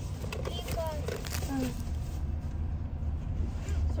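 Steady low rumble of a car heard from inside its cabin, with faint voices talking over it in the first couple of seconds.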